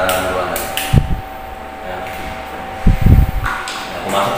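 Dull, low thumps from hands handling a wall switch and pliers at an electrical box: one about a second in, then a louder cluster near three seconds.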